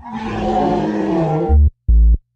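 A woman's loud, harsh yell with a wavering pitch, lasting about a second and a half. It is followed near the end by short synth bass notes from background music.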